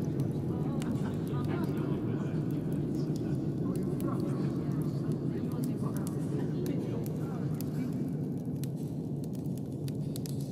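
A log fire crackling with scattered sharp pops over a steady low rumble, with indistinct murmured voices in the background.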